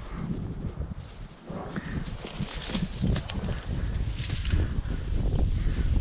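Wind rumbling on the microphone over the rustling, scuffing footsteps of a person and a pack mule walking through brush and deadfall, the mule loaded with canvas panniers of elk meat.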